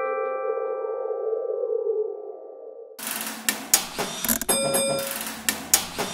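A children's song ends on a held chord that fades over about two and a half seconds, with a soft hiss under it. About three seconds in, a new stretch of cartoon sound effects starts: a quick run of clicks and ticks with short tones.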